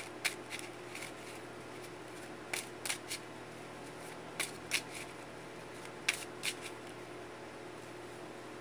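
A deck of tarot cards being shuffled by hand, hand to hand: short soft card slaps, mostly in twos and threes, a second or two apart, over a faint steady hum.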